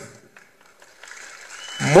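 A man's speech over a microphone pauses, leaving only faint background crowd noise, then resumes loudly near the end.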